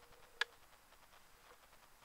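A single sharp click about half a second in, over a quiet background with a faint steady tone and a few fainter ticks.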